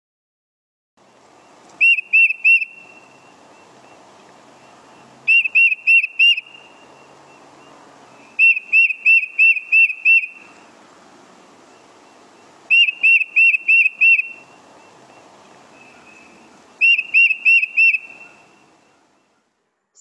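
Tufted titmouse singing its "peter-peter-peter" song: five phrases of four to seven clear, quick whistled notes, a few seconds apart, over a faint background hiss.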